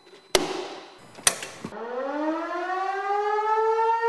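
Two sharp bangs, then an American Signal Corporation outdoor warning siren winds up. Its pitch rises for about two seconds and then holds as a loud steady tone.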